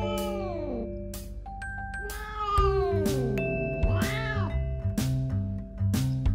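Female cat in heat yowling: three drawn-out calls, each rising and then falling in pitch, the second the longest, typical of a queen's mating call. Background music with steady mallet-like notes plays under it.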